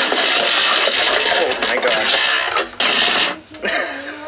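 An RCA speaker's cabinet being pried apart by hand: about three seconds of dense scraping and rubbing noise, a short gap, then more handling noise.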